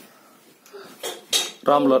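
Two sharp clinks about a second in, followed near the end by a young boy's voice starting up loudly.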